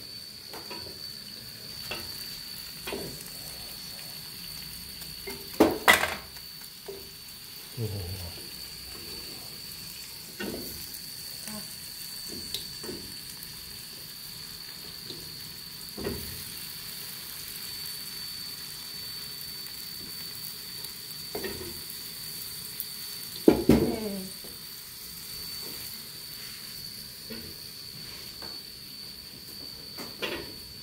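Chopped onion frying in hot oil in a wok: a steady sizzle, with occasional sharp knocks of a metal utensil against the pan. The loudest clatters come about six seconds in and again near the end of the second third.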